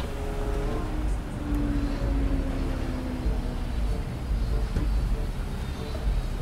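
A parked car's engine idling: a low, steady rumble.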